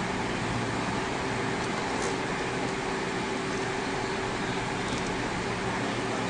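Steady mechanical hum and hiss of running equipment in the room, with a faint constant tone under it and no changes.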